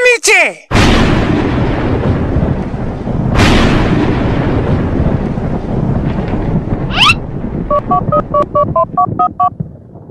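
Two loud, deep rumbling booms like thunder sound effects, one about a second in and another at about three and a half seconds, each dying away slowly. Near the end a quick rising whoosh comes, then about ten short mobile-phone keypad beeps as a number is dialled.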